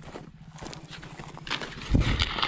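Footsteps crunching and clacking on loose flat stone chips, with a heavier thump near the end.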